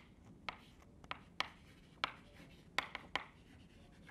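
Chalk tapping and scratching on a blackboard as a word is written by hand: a string of short, sharp taps, about six spread over the few seconds.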